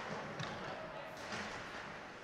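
Faint ice-rink game sounds: a steady hiss of skates and arena noise, with a light knock of stick or puck about half a second in.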